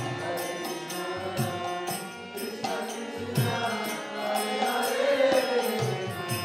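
Devotional kirtan chanting: voices sing a mantra over a steady harmonium drone, with hand cymbals clicking in a regular beat and low drum strokes every couple of seconds.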